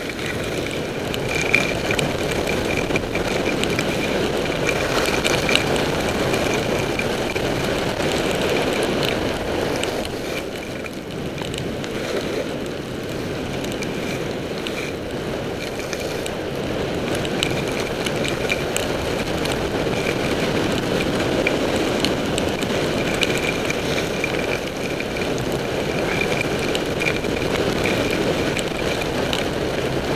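Steady rush of wind over a helmet-mounted camera during a downhill ski run, mixed with the skis sliding on snow. It eases slightly about ten seconds in, then picks up again.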